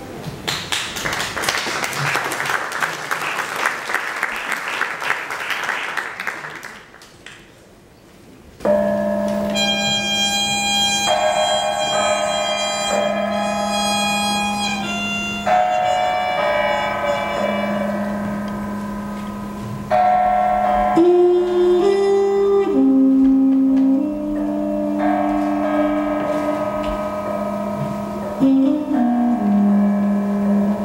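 For about six seconds, a dense, shimmering wash of noise. After a short hush, a trumpet-family horn plays slow, long-held notes over a steady low drone. The lower notes step up and down near the end.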